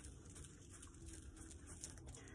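Near silence: room tone, with at most faint handling noise.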